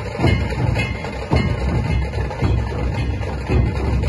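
Maharashtrian dhol-tasha ensemble playing: many large dhol barrel drums beaten with sticks together in a loud, driving, continuous rhythm.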